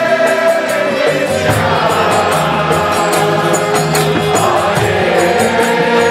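Kirtan: a group chanting a mantra in unison over a sustained harmonium drone, with a mridanga drum and a steady high, ringing beat keeping time.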